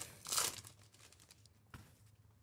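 Foil wrapper of a Bowman Chrome card pack crinkling and tearing as it is pulled open, loudest about half a second in, then fainter rustling. A short tap comes near the end.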